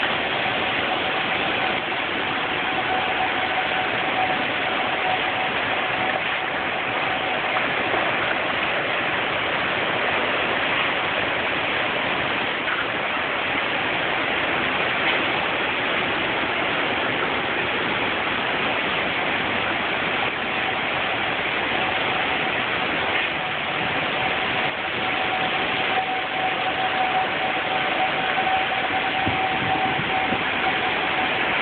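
Heavy rain and strong wind from a tornadic thunderstorm, a loud, even rushing noise that holds steady throughout. A faint steady tone sits under it for the first several seconds and again over the last several.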